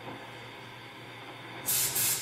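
Faint steady electrical hum, then near the end a sudden loud burst of hissing noise from an electronic noise performance played through speakers, the first of a series of noise pulses.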